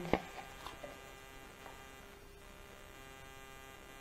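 Steady electrical hum with many even tones, quiet throughout. A sharp click comes right at the start, followed by a few faint ticks over the next two seconds.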